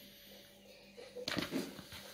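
Hands crumbling vinegar-soaked bread into a bowl: a brief cluster of faint soft crumbling noises about a second in, over a low steady hum.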